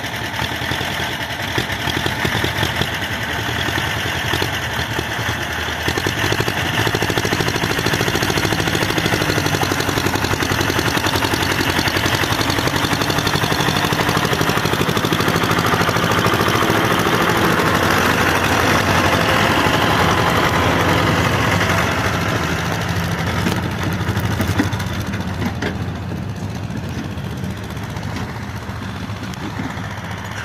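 Small diesel tractor engines running hard under load to drag a log trailer out of mud, a steady fast-pulsing engine beat. It grows louder a few seconds in and eases off several seconds before the end.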